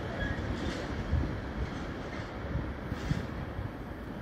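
A freight train of rail tank wagons rolling away along the track. Its wheels rumble steadily, with a few short knocks, and the sound slowly fades.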